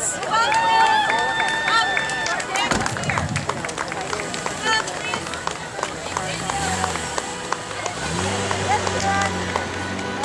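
Outdoor voices: a drawn-out high call or cheer in the first couple of seconds, then scattered talk. A low steady drone from a car engine comes in over the second half as the SUV pulls away.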